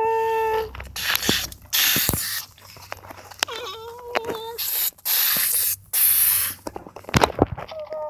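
A person's voice making tornado sound effects for a toy train: hissing, whooshing bursts of breath, broken by a couple of short held hooting tones like a train horn. A few sharp knocks come near the end.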